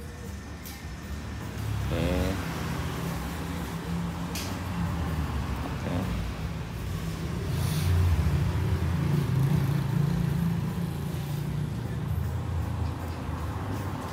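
A car engine running steadily, a low hum that grows louder a couple of seconds in.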